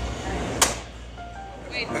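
A baseball bat striking a stainless steel mesh security window screen once, a single sharp hit about half a second in.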